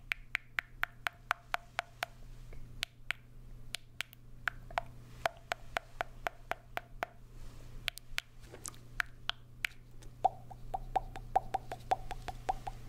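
Mouth sounds made into a small plastic cone: quick tongue clicks and pops, about three to four a second, each with a short hollow ring from the cone, with brief pauses between runs.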